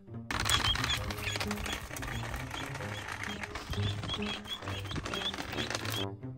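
Small wooden cart and feet crunching over dry leaves and twigs: a dense, rapid crackling that starts suddenly just after the start, with goslings peeping in short high chirps throughout, over background music.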